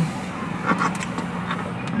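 A steady background rumble of noise, even and unbroken, with a faint low hum in it and no distinct events.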